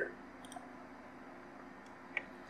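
Faint room tone with a small double click about half a second in, from the computer's mouse or keyboard as the typed search is run.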